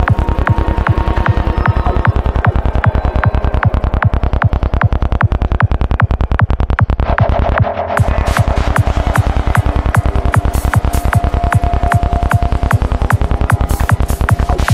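Psytrance electronic dance music with a fast, driving kick drum and bass. Just before the midpoint the kick drops out for a moment, then comes back with added hi-hats.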